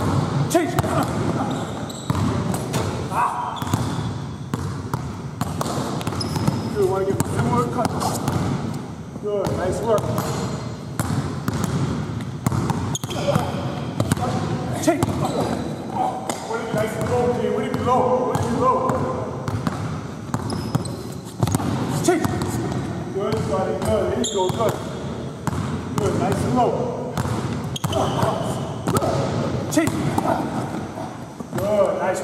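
Basketball dribbled hard on a hardwood gym floor, a run of sharp bounces, with voices talking in between.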